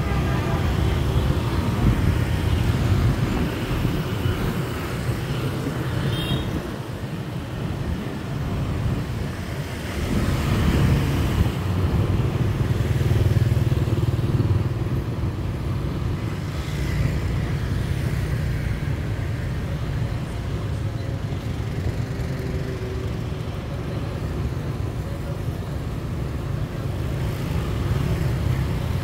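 Motorbike and scooter traffic on a city street, engines running with a steady low rumble, heard from within the traffic on the road.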